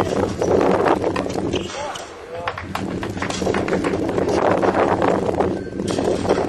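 Tennis doubles rally on a hard court: racket strikes, ball bounces and players' footsteps as repeated sharp knocks, over people talking and a steady low hum.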